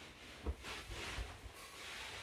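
Faint rustling of a fabric cushion being dragged across carpet and a body shifting on the floor, with a soft thump about half a second in.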